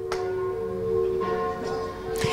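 Soft background music with sustained, chime-like tones holding steady.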